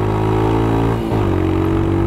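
Royal Enfield Himalayan's 411 cc single-cylinder engine at wide-open throttle, accelerating hard from 40 mph, with a brief dip in the engine note about a second in.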